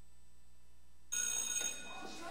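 After a second of near silence, an electric school bell rings briefly.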